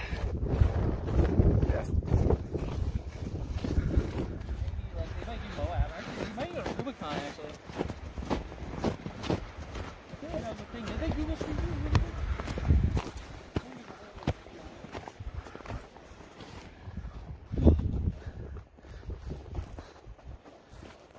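Footsteps crunching on packed snow as people hike down a trail, an irregular run of steps, with indistinct talking in between.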